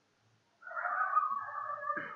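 A single drawn-out animal call, starting about half a second in and lasting nearly two seconds, with a sharp click right at its end.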